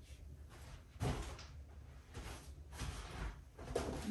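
A paper gift bag and its shiny red wrapping rustling and crinkling as they are picked up and handled, beginning with a sudden bump about a second in.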